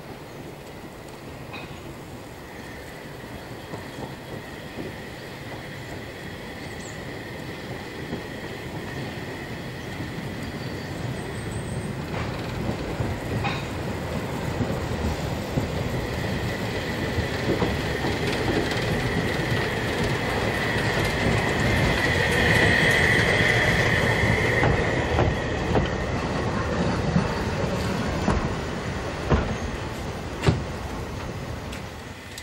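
Narrow-gauge steam train behind locomotive 99 4511 rolling into a station, growing steadily louder as it nears and slows to a stop. A steady high squeal from the wheels builds to its loudest about three-quarters of the way through. Two sharp knocks come near the end.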